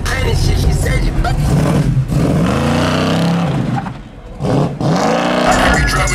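A car engine revved twice, its pitch climbing and falling each time, over hip-hop music with rap vocals.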